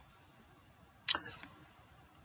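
Near silence, broken about a second in by a short, sharp intake of breath through the mouth that fades within half a second.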